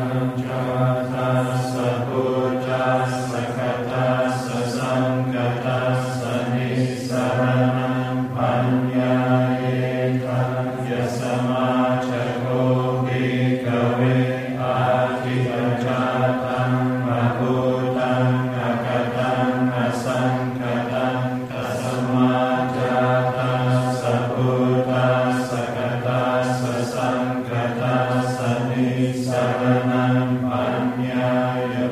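Many voices chanting together in unison, held on one steady low pitch with short syllabic steps: Buddhist monastic recitation.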